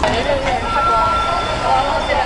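Steady noise, like traffic, with faint indistinct voices in it. A thin steady tone rises out of it from about half a second in until shortly before the end.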